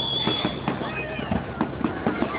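Aerial fireworks bursting: a run of irregular pops and crackles, with a high whistling tone through the first second.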